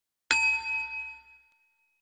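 A single bright, bell-like ding sound effect, struck about a third of a second in and ringing out over about a second and a half.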